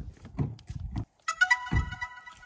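DJI Mavic 3 Cine drone powering on and playing its new start-up melody: a short electronic chime of several notes entering one after another, held into the end. It is preceded by a few light clicks and knocks from hands on the drone.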